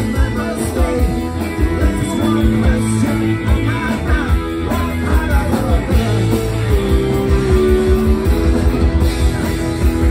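Live rock band playing loud: electric guitar and drums driving a steady beat, with a singer's voice over them.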